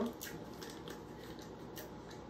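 Faint clicks of a small spice jar being handled and its cap worked open, over quiet room tone.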